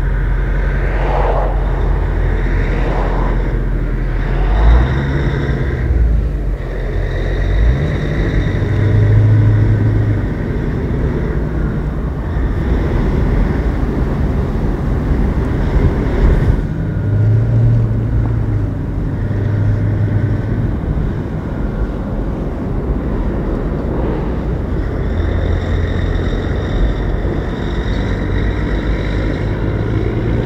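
A 1986 Peterbilt 359's B-model Caterpillar diesel heard from inside the cab while under way, with a steady drone and road rumble. The engine note steps in pitch several times as the driver works through the gears of the 13-speed transmission.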